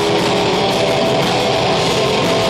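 Black metal band playing live: loud, dense distorted electric guitars and bass over drums, with a fast, even beat running through it.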